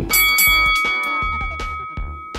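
A single bell-like chime sound effect rings out just after the start and slowly dies away, over upbeat background music with a steady beat.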